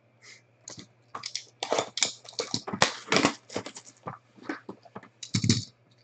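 Cellophane shrink wrap being torn off a cardboard card box and crumpled, a run of irregular crackles and rustles, with a heavier thump from the box being handled near the end.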